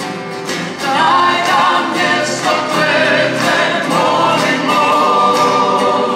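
Live acoustic band music: several male and female voices singing a melody together over strummed acoustic guitars, with a steady beat.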